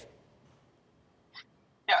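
A pause between speakers: near silence with one brief, faint mouth noise about one and a half seconds in, just before a man starts to say "yeah" at the very end.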